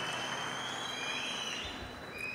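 Audience applause slowly dying away, with a few faint high steady tones over it.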